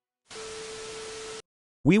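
A burst of static hiss with a steady hum under it, lasting about a second and cutting off abruptly. It is a transition sound effect marking the switch to the next story.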